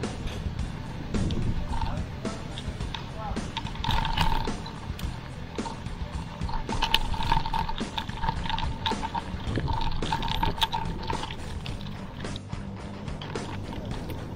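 Wind and road noise on a handlebar-mounted camera of a mountain bike riding over a rough concrete street: a steady low rumble with frequent rattling clicks. A faint repeating tone comes and goes in the middle, with music-like sound underneath.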